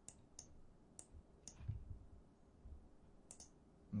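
Faint computer mouse button clicks, a few scattered single clicks with a quick pair near the end.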